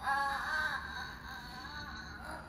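A young child's high-pitched, drawn-out wailing voice, playful rather than distressed, wavering slightly in pitch and loudest at the start.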